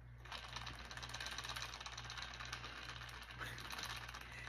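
A drink being poured from a stainless steel cocktail shaker through its strainer cap into a shot glass: a faint, fast crackling rattle that starts a moment in.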